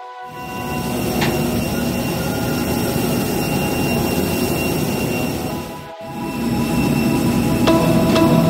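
Steady loud jet-engine roar with a thin high whine, mixed with background music. It breaks off abruptly about six seconds in, then swells back up.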